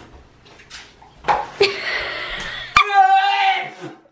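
A person slurping ramen noodles: a long sucking hiss of about a second, then a drawn-out vocal cry.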